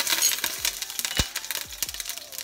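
Whole spices (dried red chillies, cinnamon stick, mace and cloves) sizzling and crackling in hot oil in a stainless steel pan, with sharp pops scattered through and one louder pop a little past halfway.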